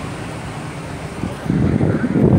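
Wind buffeting a handheld microphone over a low, steady outdoor rumble, with louder gusts starting about one and a half seconds in.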